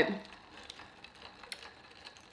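A few faint, sparse clicks in an otherwise quiet pause, one a little sharper about one and a half seconds in.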